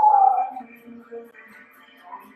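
A woman's short vocal call right at the start, sliding down in pitch for about half a second, over faint steady background music.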